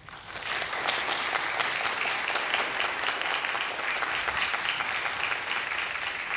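Audience applauding: the clapping starts suddenly and builds within about half a second, then holds steady and dense.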